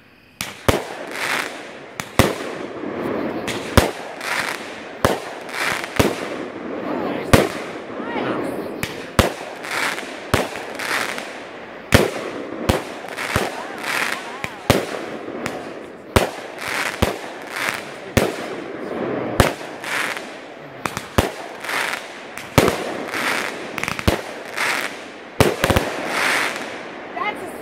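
A 200-gram fireworks cake, a Black Cat Hell Kat with salutes, firing shot after shot at about one to two a second. Each shot is a sharp bang, with a continuous noisy hiss of burning effects between the shots.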